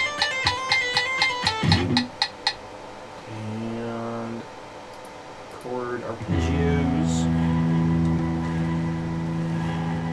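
Electric guitar picking a fast run of ringing arpeggiated chord notes at 240 beats per minute, which stops about two and a half seconds in. A chord is then strummed about six seconds in and left to ring.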